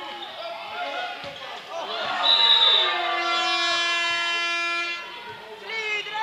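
Voices shouting and cheering in a large echoing sports hall. About two seconds in, a horn gives one long blast of nearly three seconds; its pitch slides down at first and then holds steady.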